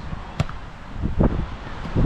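A volleyball is hit by hand in a beach volleyball rally: a sharp smack about half a second in, then a duller hit a little over a second in. Wind is buffeting the microphone.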